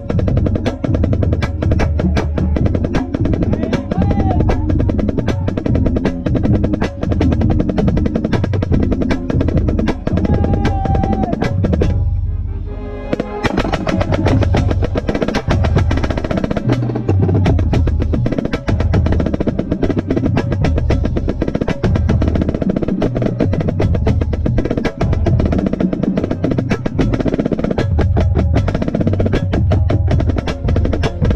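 Marching snare drum played loud and close, fast strokes and rolls over the rest of a marching band. About twelve seconds in, the snare stops for a second or so while the band's low sound holds underneath, then the snare comes back in.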